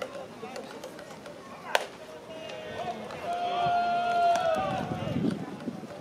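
One sharp crack of a pitched baseball arriving at the plate, about two seconds in, followed by a long drawn-out shout from a spectator that holds one pitch and falls away at the end, over a steady ballpark murmur.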